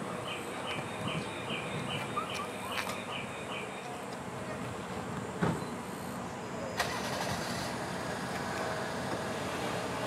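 Outdoor ambience with insects: a high chirp repeated about three times a second for the first three seconds, then a steady high buzz that sets in suddenly about seven seconds in. A single sharp knock about five and a half seconds in.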